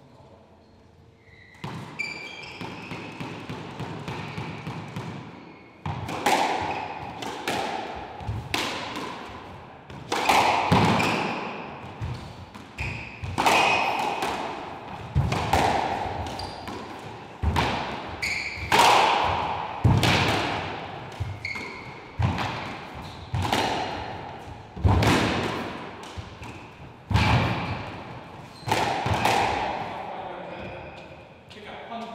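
Squash rally: the ball is struck by the racket and hits the walls about every one and a half to two seconds, each hit sharp and echoing in the court. The hits start about six seconds in and carry on until just before the end.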